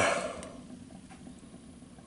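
Faint, steady low rumble of a rocket stove mass heater burning with a strong draft that pulls air and flame into the barrel, after a brief hiss that fades out in the first half second.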